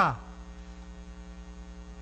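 Steady low electrical mains hum picked up through the lecture microphone's sound system, with the man's voice falling away right at the start.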